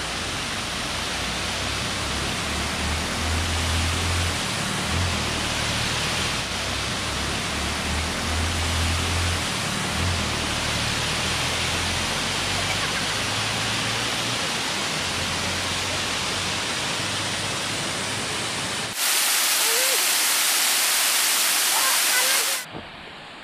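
Water pouring continuously over the rims of circular bell-mouth (morning-glory) spillways and falling into the shafts, a steady rushing noise. About three seconds before the end the sound changes abruptly to a brighter, hissier rush with the low rumble gone.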